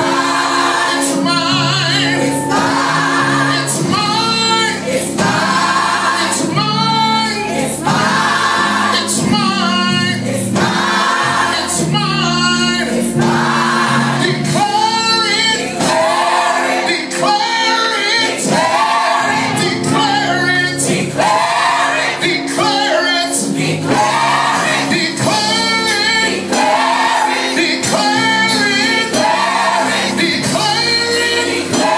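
A gospel praise-and-worship team of men and women singing together in short, repeated phrases over instrumental accompaniment with sustained low notes.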